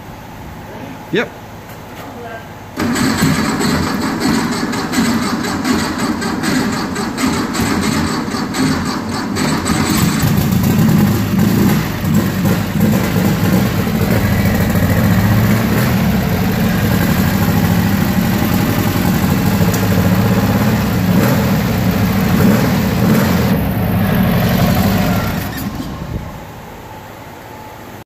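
Air-cooled VW flat-four engine on twin carburettors firing up abruptly a few seconds in and running, uneven for the first several seconds, then steadier and louder, before it cuts off near the end.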